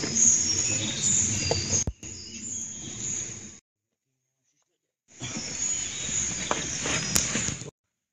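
Outdoor woodland ambience with high chirping and a low rumble of handling noise on a handheld camera microphone, broken by two abrupt drops into dead silence, one about three and a half seconds in and one near the end.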